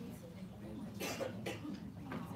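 A person coughing twice in quick succession about a second in, over a low murmur of voices in the room.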